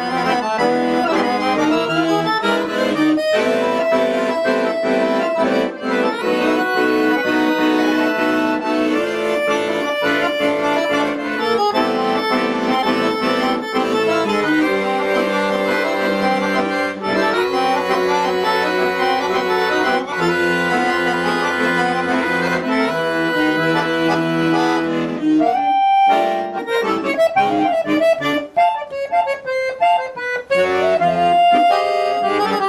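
Piano accordion played solo: sustained chords under a melody, with a short pause near the end before a quieter, halting melodic phrase.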